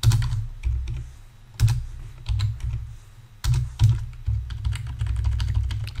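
Computer keyboard keystrokes as code is edited letter by letter: scattered taps, a short pause about halfway, then a quicker run of keys.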